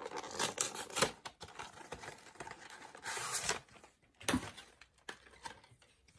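Packaging being torn open and handled while a Pokémon TCG pin collection box is unboxed: a run of clicks and rustles, a longer tearing rasp about three seconds in, and a sharp knock just after four seconds.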